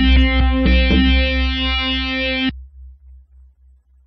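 Sequenced synthesizer arpeggio from Ableton Live instruments driven by a timeFrog controller: plucked-sounding notes about three a second over a pulsing deep bass. The notes stop abruptly about two and a half seconds in, leaving only the low pulse fading away.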